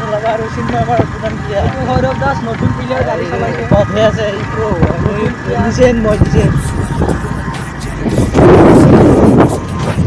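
A person's voice with music, running on throughout. A loud rush of noise lasts about a second, starting about eight seconds in.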